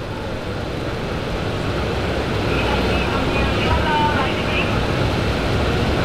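Steady low rumble of city street and vehicle noise, with faint voices in the middle.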